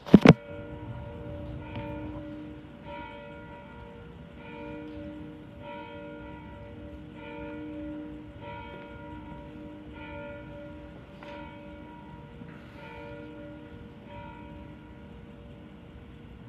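Church bells ringing a series of strokes at several different pitches, roughly one a second. Two sharp clicks at the very start are the loudest sounds.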